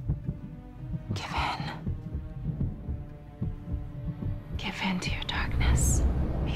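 A woman's breathy whispering close to the listener, one burst about a second in and another near the end, over a low pulsing music bed.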